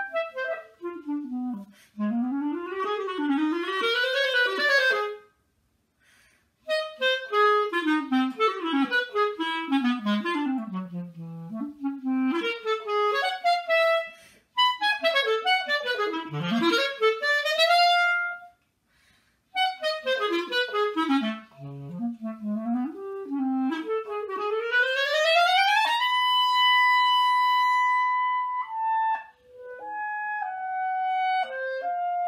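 Solo clarinet playing fast runs and arpeggios that sweep up and down, broken by a few short pauses. Near the end it climbs in a quick run to a long held high note, then steps down.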